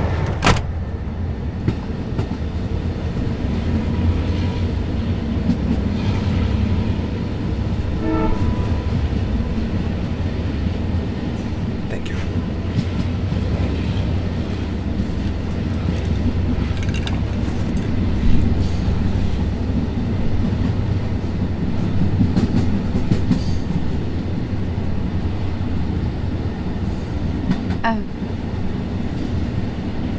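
Steady low rumble of a moving passenger train heard from inside a compartment, with scattered clicks and knocks. About eight seconds in there is a brief pitched tone.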